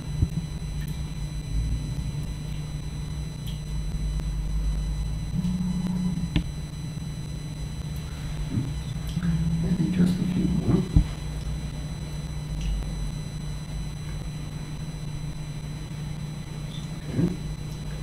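Grapes dropped into a glass blender jar and the jar handled on the table, giving a few light knocks and clatters, the sharpest about a third of the way in and a cluster past the middle, over a steady low hum.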